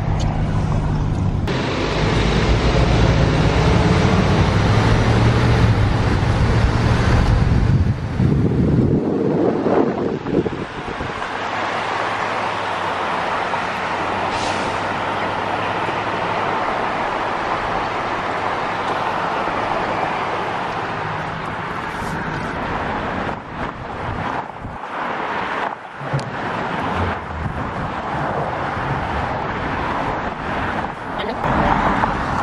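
A moving pickup truck in city traffic, heard with the window open. For the first nine seconds or so a low engine and road rumble dominates. After that comes a steady rush of wind and tyre noise that grows uneven near the end.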